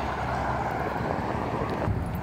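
Steady expressway traffic noise: cars going by at speed, an even rush without separate pass-bys.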